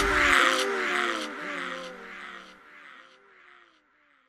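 The closing tail of a Hindi film song recording: a short call-like sound repeated over and over with echoes, each note rising then falling, fading away to silence about three and a half seconds in.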